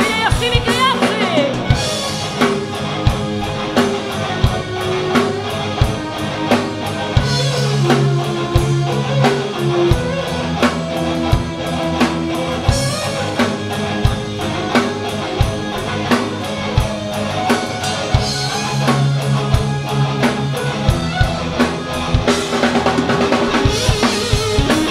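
Live hard rock band playing: a drum kit keeps a steady beat, with a cymbal crash every five seconds or so, over distorted electric guitars and bass.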